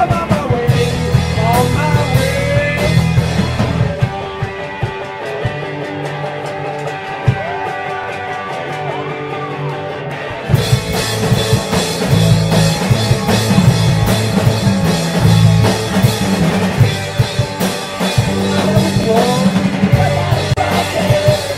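Live rock band playing: electric guitars, bass and drum kit, with some singing. From about four seconds in, the low end and cymbals drop away for a quieter stretch, and the full band crashes back in about halfway through.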